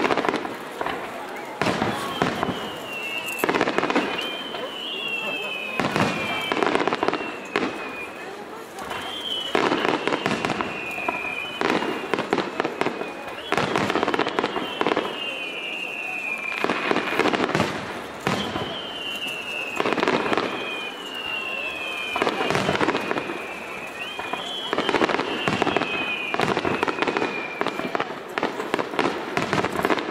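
Fireworks barrage (star mine): clusters of bangs and crackling bursts come every two to three seconds, mixed with repeated high whistles that fall in pitch.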